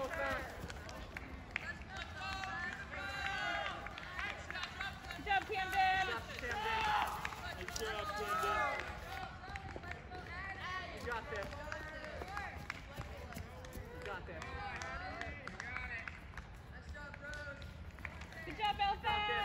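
Spectators' voices shouting and cheering encouragement, several overlapping calls that rise and fall, loudest about six to seven seconds in.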